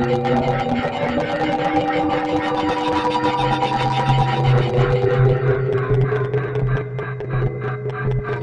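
Algorithmic electroacoustic computer music made in SuperCollider: a steady low drone under several held tones that shift in pitch, over a dense, fast-flickering texture.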